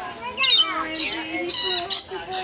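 Rainbow lorikeets squawking: several shrill, high calls, with the longest and loudest near the end.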